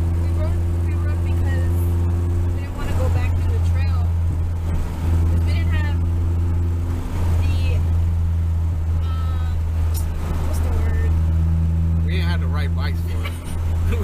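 Car interior drive noise while cruising: a steady low engine and road drone heard inside the cabin, with a few brief dips in level.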